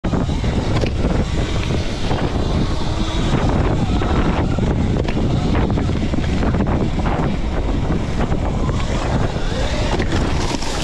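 Sur-Ron electric dirt bike riding fast along a leaf-covered dirt trail: a loud, steady rush of wind on the microphone and tyres on the ground, with occasional knocks from bumps.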